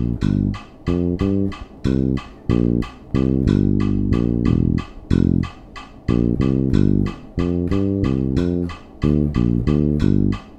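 Five-string electric bass playing a syncopated line in a five-count odd meter, with short rests between phrases, over a steady metronome click of about two and a half clicks a second.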